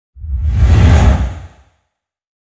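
A swelling whoosh sound effect over a deep rumble. It builds for about a second and fades out by about a second and a half in. It is the transition sting of a TV news logo animation.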